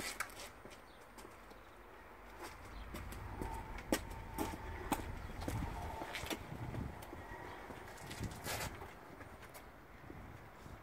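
Footsteps on paving stones: a few sharp steps roughly half a second apart through the middle, over a low rumble.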